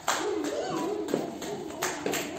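A few sharp hand claps, one right at the start and two more late on, over children's voices.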